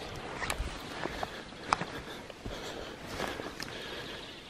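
Quiet rustling with scattered light clicks from footsteps in ground vegetation and a handheld camera being moved close to the microphone.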